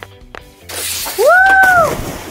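Added sound effect for a doll going down a toy pool slide: a sudden loud rush of hissing noise about halfway through, with a high whistle-like "wheee" tone rising and then falling over it.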